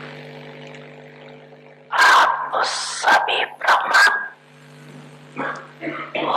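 A woman speaking into a microphone in short loud phrases after a music tail fades out, over a steady electrical hum.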